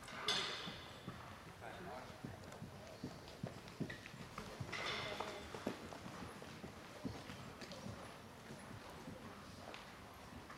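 Muffled hoofbeats of ridden horses on soft arena sand footing, irregular thuds as they pass, with two short hissy bursts, the first and loudest just after the start and another about five seconds in.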